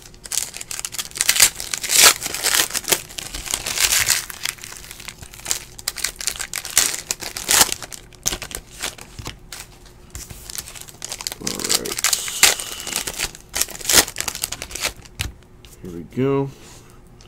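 Plastic wrapper of a trading-card pack crinkling and tearing as it is ripped open, with cards shuffled by hand, in an irregular run of rustles and crackles.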